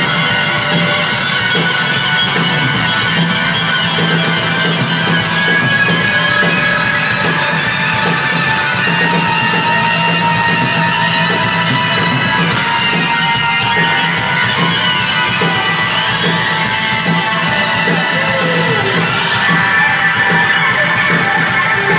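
Live rock band playing an instrumental passage, with an electric fiddle holding long notes and sliding between them over keyboards and drums.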